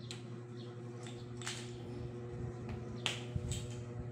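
Plastic magnetic building-toy rods and balls snapping together and knocking, heard as several sharp clicks, the loudest about three seconds in, over a low steady hum.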